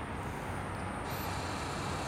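Steady outdoor background noise with no distinct events.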